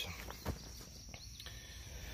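Faint outdoor ambience with a steady high drone of insects and a soft knock about half a second in.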